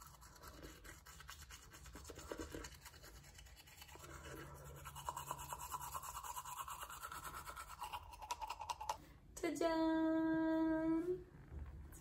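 Teeth being brushed with a soft manual toothbrush, a Curaprox Ultra Soft, in quick scrubbing strokes for about nine seconds. Near the end comes a louder, steady held tone that lasts about two seconds.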